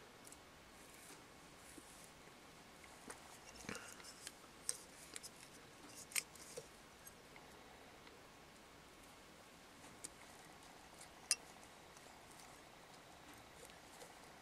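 Faint, scattered small clicks and snips of fly-tying scissors and hand work at the vise: a cluster of them between about three and seven seconds in, then two more single clicks later.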